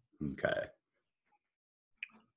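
A man says a single short 'okay' over a web-conference line, then the audio drops to silence.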